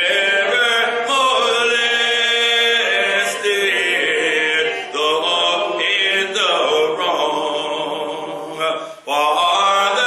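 Unaccompanied hymn singing, with a man's voice leading at the microphone in long held phrases and brief breaths between lines.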